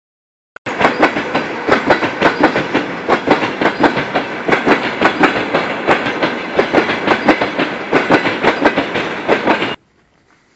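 A freight train of open-top gondola wagons rolling past close by, its wheels clacking irregularly over the rail joints. The sound starts suddenly under a second in and cuts off abruptly near the end.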